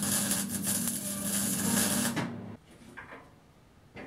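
Wire-feed (MIG) welder laying a weld on the steel sawmill frame: a steady crackling sizzle over a low hum, which stops abruptly about two seconds in.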